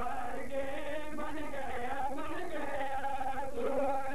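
A man's voice chanting a melodic religious recitation in long, wavering held notes.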